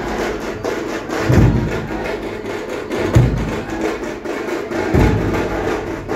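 Drumming: a heavy bass-drum beat about every two seconds over fast, dense strokes from smaller drums.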